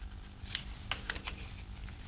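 A series of faint small clicks and ticks, irregular and mostly in the second half, from dental floss snapping between teeth.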